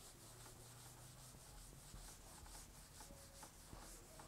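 Faint rubbing of a handheld eraser wiping a whiteboard, in quick repeated back-and-forth strokes.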